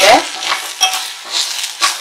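A steel spoon stirring Malabar spinach leaves as they fry in a stainless steel pot, several scraping strokes against the metal, with sizzling.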